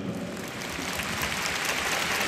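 Audience applauding, a dense patter of many hands clapping that grows a little louder.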